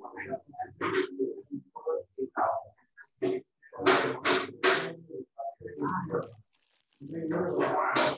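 Indistinct talking among several women, the words too unclear to make out, with a short run of laughter about four seconds in.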